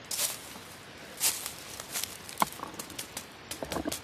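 Footsteps crunching and rustling through dry fallen leaves and twigs on the forest floor, irregular, with the loudest crunches about a quarter second and just over a second in.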